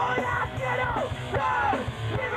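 Punk rock band playing live in a rehearsal room: distorted electric guitars and drums, with a yelled voice over them. High notes repeatedly slide down in pitch.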